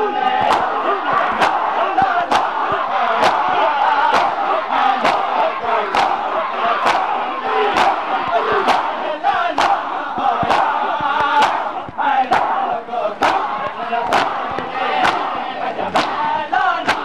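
A crowd of mourners doing matam: sharp, rhythmic slaps of hands on bare chests, about one a second, over many men's voices chanting and shouting.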